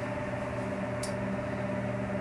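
A steady low hum made of several held tones, with a faint click about a second in.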